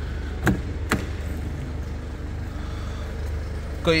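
Two sharp clicks about half a second apart as the car's front door handle and latch are worked and the door is opened, over a steady low hum.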